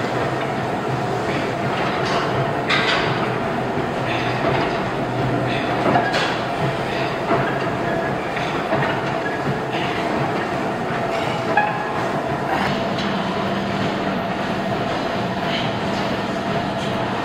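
Weight-stack gym machine worked in repetitions: the cable and plates clank now and then, every second or few, over a steady mechanical hum.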